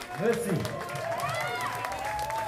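Audience members at a rock gig shouting and whooping just after a song ends, a few calls rising and falling in pitch.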